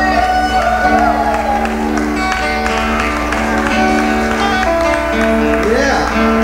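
Live rock band with electric guitars playing, holding steady chords that change every second or so.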